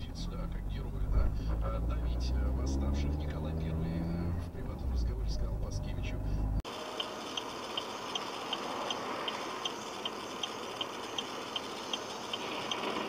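Dashcam audio from inside a moving car: a low engine and road rumble, which stops abruptly a little past halfway at a cut. It gives way to a quieter steady hiss with a light ticking about twice a second.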